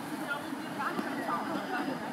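Faint, indistinct chatter of several women's voices over a steady background hiss, with no clear words.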